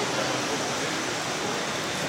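Steady, even rushing background noise of a large hall, with no distinct events.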